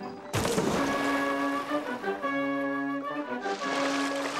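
A sudden big splash as an overloaded gondola sinks into the water, fading over about a second, with a second rush of splashing near the end. Cartoon background music with held notes plays throughout.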